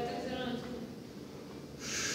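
A weightlifter's strained, voiced breathing as he drives up out of a heavy back squat under a near-maximal 122.5 kg barbell, then a short, sharp hissing breath near the end as he reaches the top.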